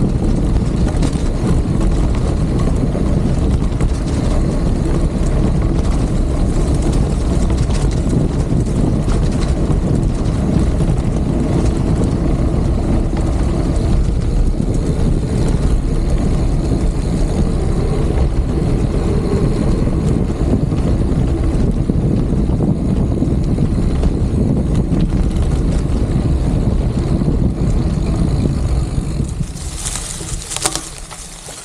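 Wind buffeting the camera microphone and tyres rumbling on a dirt road as a mountain bike coasts downhill: a loud, steady low noise that fades away near the end as the bike slows.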